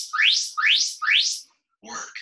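Four quick electronic chirps, each rising steeply in pitch, about two a second: an interval timer signalling the start of a work interval.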